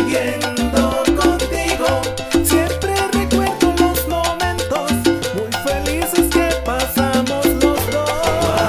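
Salsa band recording in an instrumental passage: a steady dance beat with sharp percussion strokes over a moving bass line, with no singing.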